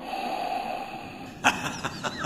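Steady underwater ambience from a cartoon soundtrack: a low watery wash. A sharp click comes about one and a half seconds in, followed by a few short gliding bubble-like tones.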